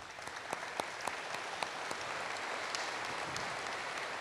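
Audience applause: a few separate claps at first, quickly filling into steady clapping from many hands.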